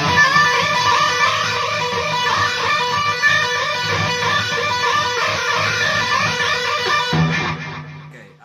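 Distorted electric guitar with a Floyd Rose tremolo, played loud through an amp head, its notes wavering up and down in pitch as the whammy bar is pushed down and up again and again. It stops about seven seconds in, with a short last note that fades out.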